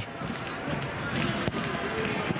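Football match sound from the pitch between commentary lines: steady background noise with a sharp ball strike about one and a half seconds in.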